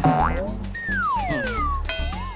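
Background music with an edited-in comic sound effect: two whistle-like tones slide steadily downward in pitch over about a second, and a sudden ringing tone comes in near the end.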